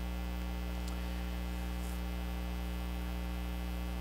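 Steady electrical mains hum: a low, unbroken hum with a faint buzz of evenly spaced overtones above it, unchanging in level.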